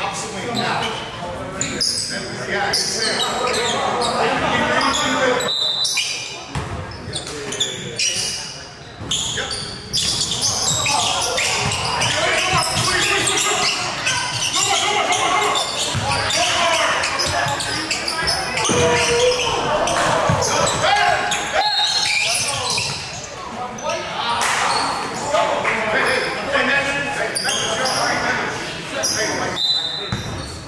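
Basketball game sounds echoing in a large gym: a ball bouncing repeatedly on the hardwood floor, under shouting voices and chatter, with a few brief high squeaks.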